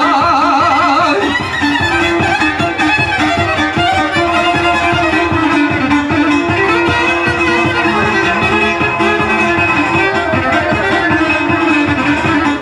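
Live izvorna (traditional Bosnian folk) band music: a violin leads over a steady, fast strummed string accompaniment. A wavering held note fades out about a second in.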